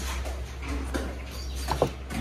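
Rustling from the phone being handled as the camera swings round, over a steady low rumble, with a short high squeak near the end.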